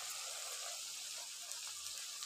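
Chunks of meat sizzling in rendered fat in an uncovered karahi, a steady fine crackling hiss. The cooking water has almost all boiled off, so the meat is beginning to fry.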